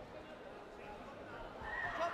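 Indistinct voices echoing in a large sports hall, with a brief high-pitched call near the end.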